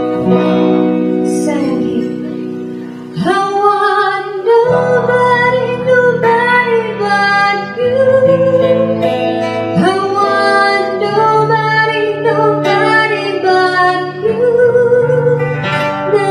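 A woman singing a Korean pop song live over two strummed guitars; after a brief quieter guitar passage her voice comes in about three seconds in and carries on over the accompaniment.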